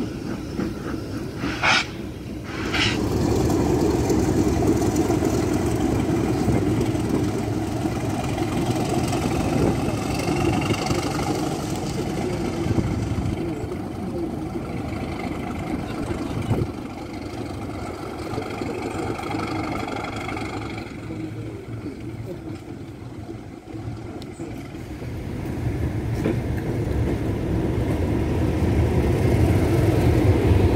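Heritage railway locomotives working: two short whistle blasts about two seconds in, then a steady low rumble of a locomotive running, which eases off a little past twenty seconds and swells again near the end.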